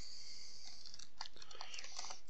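Faint small clicks and scrapes of hands handling a screwdriver and parts over an opened laptop, with a few light ticks about halfway through and near the end.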